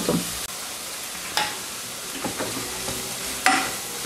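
Celery, onion and carrot sizzling as they fry in oil in the bowl of an electric multicooker, stirred with a utensil, with two short knocks of the utensil against the pot.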